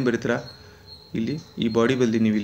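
A man speaking in short phrases, pausing for about a second in the middle, with a faint steady high-pitched whine underneath.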